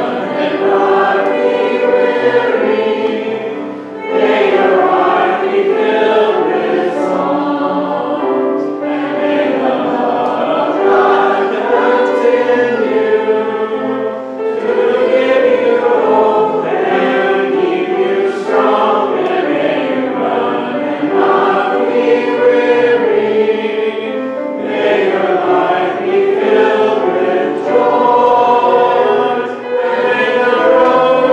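Congregation singing a closing hymn together with piano accompaniment, in phrases with short breaks between lines.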